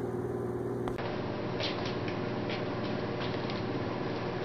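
Room background with no speech: a steady low hum, which changes abruptly about a second in to an even hiss with a few faint soft clicks.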